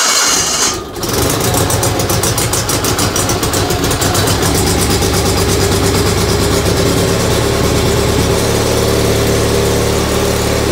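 Gravely garden tractor engine cranked briefly by its starter on choke, catching about a second in and then running steadily.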